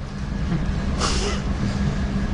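Steady low background rumble with a constant hum, and a brief hiss about a second in.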